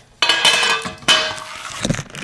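Sheet-metal lid and box of a power-supply enclosure clinking and rattling as it is handled and its earth strap is pulled off, starting suddenly just after the start, with a second clatter about a second in and a knock near the end.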